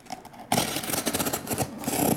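Clear plastic packing tape being peeled off a cardboard case, a loud rapid crackling rip that starts about half a second in.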